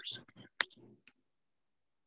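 A sharp single click about half a second in, then a fainter click about a second in, after the trailing end of a man's speech; the call audio then cuts to dead silence.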